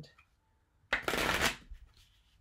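A deck of tarot cards being shuffled by hand: one short rustle of cards, about half a second long, starting about a second in.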